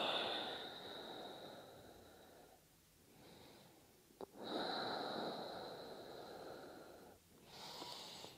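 A person's slow, deep breaths through the nose, picked up close on a clip-on microphone. A long breath fades away over the first two seconds or so. About four seconds in, a faint click comes just before a second, longer breath, and a short breath follows near the end.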